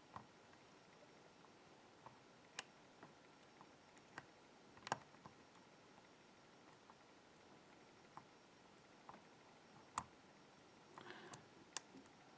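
Single-pin picking of a BKS euro-cylinder: faint, sparse metallic clicks of the pick and tension wrench against the pins, a second or more apart, the clearest about five seconds in, with a short scratching of the pick near the end.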